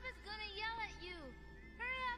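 High-pitched mewing cries from the anime's soundtrack, five or so short rising-and-falling calls in quick succession, a pause, then another near the end, with faint music underneath.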